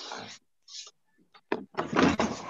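Whiteboard eraser being rubbed across a whiteboard: a few short wiping strokes, a couple of light knocks, then a longer, louder stroke near the end.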